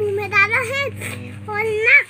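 A young girl talking in a high voice, with a steady low hum underneath.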